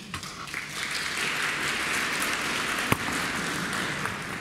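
Audience applauding, the clapping swelling over the first second and tapering off near the end, with one sharp knock about three seconds in.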